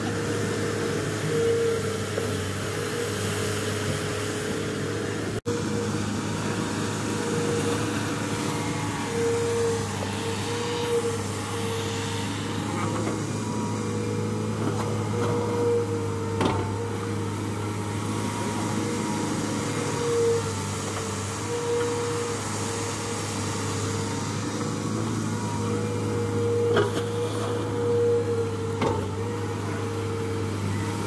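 Diesel engine of a CAT 307-based amphibious excavator running steadily under working load as its long-reach arm digs mud from a canal. A whining tone rises in level several times as the machine works, with a few faint knocks.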